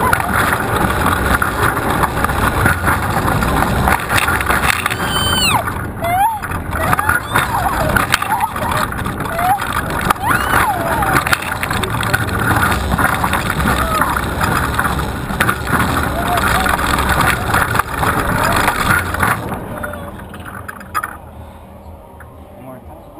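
Steel roller coaster ride heard from a camera on the car: loud wind rushing over the microphone mixed with the rumble of the train on the track, with riders' voices rising over it a few times. From about 19 seconds in the noise falls away as the train slows into the station.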